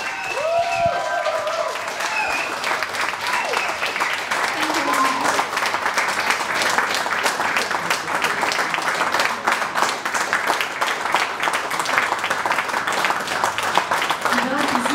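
Audience applauding: dense, steady clapping, with a shout or cheer in the first second and a few voices over it.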